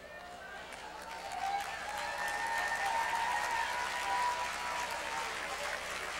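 A church congregation applauding and calling out, swelling over the first couple of seconds and then holding steady. A faint held note sounds through the middle.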